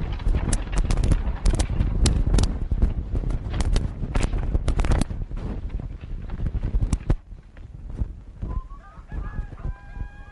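Horse-drawn wagon clattering away on a dirt road: a dense run of hoof and wheel knocks over a low rumble that falls away after about five seconds. Near the end, farmyard fowl start calling.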